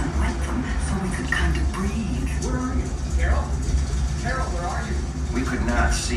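Recorded voices from an exhibit's soundtrack, played back over loudspeakers, with music and a steady low rumble underneath.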